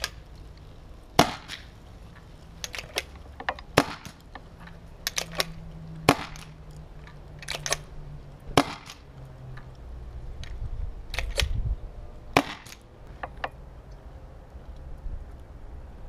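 Carter Machine Buzzard pump-action paintball gun firing five sharp shots about two and a half seconds apart. Fainter clacks between the shots are the pump being cycled to recock it.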